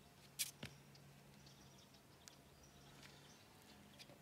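Near silence, with two faint sharp clicks about half a second in over a faint low hum.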